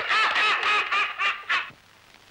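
People laughing heartily in quick ha-ha pulses, about four a second, breaking off about one and a half seconds in.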